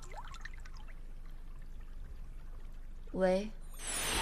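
Quiet, steady background hiss. Near the end comes a short voiced hum, then a louder rush of noise.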